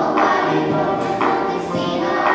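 A group of children singing together as a choir, with a strong accent about once a second.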